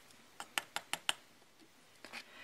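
About five quick, light taps within a second, made while excess silver embossing powder is knocked off a stamped cardstock tag over a plastic tub.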